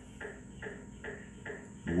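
Faint rhythmic chirping, about two short pulses a second, over a steady high-pitched whine.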